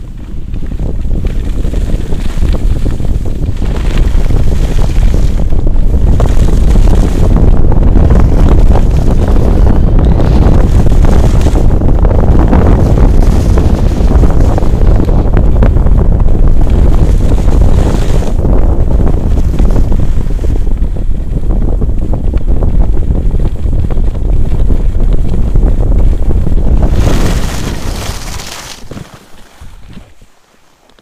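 Wind rushing hard over a pole-held action camera's microphone during a downhill ski run, mixed with the scrape of skis on packed snow. It swells a few seconds in and dies away near the end as the skier slows to a stop.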